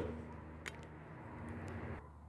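Faint handling noise from a phone camera being picked up and moved: a few light clicks and rubs over a low steady hum.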